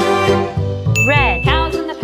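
Upbeat children's background music on keyboard with a repeating bass beat. About a second in, a bright ding sound effect rings briefly over the music, together with a short swooping up-and-down sound.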